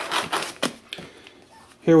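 Plastic bag of dry malt extract rustling and crinkling against the cardboard box as it is picked up and lifted out, mostly in the first second. A man says "here" near the end.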